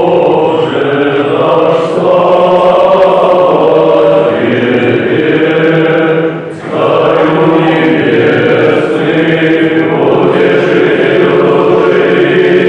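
Orthodox church chant: voices singing long, sustained phrases, with a short break about six and a half seconds in before the singing resumes.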